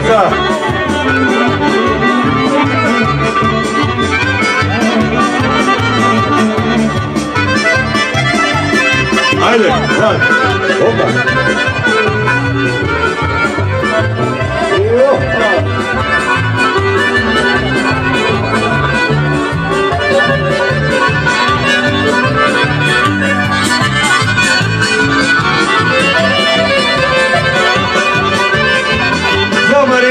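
Accordion playing lively kolo folk dance music with a steady, even beat.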